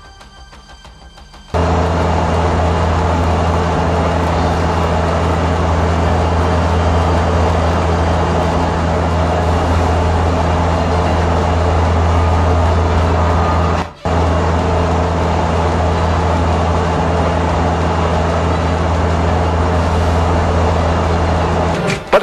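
Quiet music briefly, then a loud, steady mechanical drone with a deep hum, like a large engine running. The drone breaks off for an instant about two-thirds of the way through.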